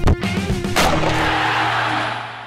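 Short rock-style intro jingle that ends about a second in on a loud crash, which rings on and slowly fades out.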